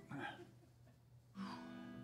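A chord strummed once on an acoustic guitar about one and a half seconds in, left ringing and slowly fading.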